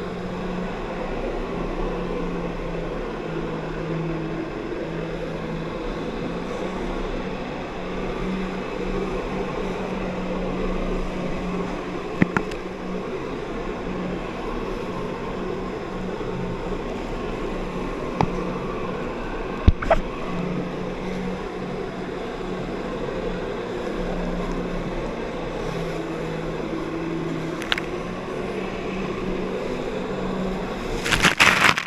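Jet ski engine running steadily at high revs, driving water up the hose to a flyboard, over a wash of rushing water. A few short sharp clicks come through in the second half.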